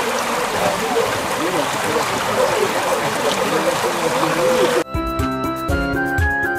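Water rushing steadily through an open wooden sluice gate of a mill race, with voices faintly behind it. About five seconds in, it cuts to traditional flute music.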